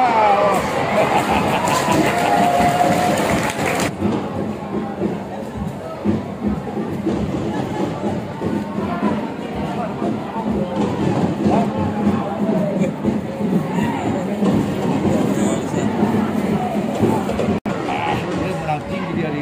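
Football stadium crowd shouting and cheering, many voices overlapping. It is loudest and fullest in the first four seconds, then settles to a steadier hubbub.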